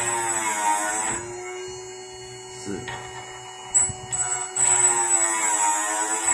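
Small electric end mill grinder running with a steady motor tone, while the end mill's point is rotated against the grinding wheel. Two grinding passes, one in the first second and a louder one from about four and a half seconds, each adding a high, hissing grind.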